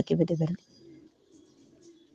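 A voice speaking in Soninké that stops about half a second in, followed by a pause holding only a faint, low background sound.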